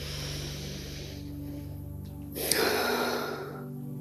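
A woman's breathing close to the microphone over soft ambient music: one breath at the start, then a louder breath with a short click about two and a half seconds in.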